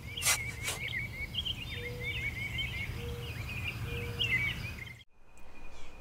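Birds chirping rapidly over a steady low rumble, with two sharp clicks near the start. The sound cuts off abruptly about five seconds in.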